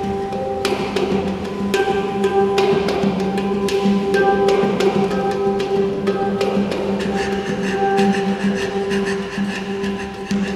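A hang, the steel handpan, played with the hands: a steady run of quick finger strikes over ringing, sustained notes, with a deep low note and its octave humming underneath the higher tones.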